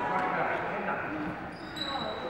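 Busy sports-hall hubbub during badminton play: a steady babble of distant voices echoing in the large hall, with light knocks of rackets striking shuttlecocks and a brief high squeak near the end, typical of a shoe on the wooden court floor.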